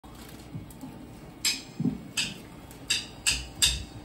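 Drum kit before the song: a few sharp stick or hi-hat clicks at uneven intervals, the last ones coming closer together, with a couple of soft low thumps earlier.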